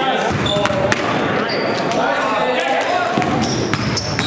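Basketball game sounds in a gymnasium: a ball bouncing on the wooden court, a few short sneaker squeaks, and players' voices calling out over each other.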